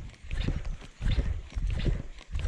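A baitcasting reel being cranked close by, with irregular low thumps and clicks as the rod is twitched to work a propeller topwater lure, in two stretches with a short lull about a second in.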